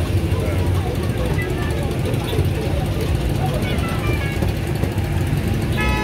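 Steady low rumble of roadside traffic with people's voices talking in the background. A vehicle horn starts to sound right at the end.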